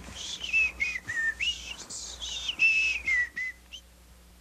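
A person whistling a short, breathy tune of several notes that step up and down, ending with a brief high note.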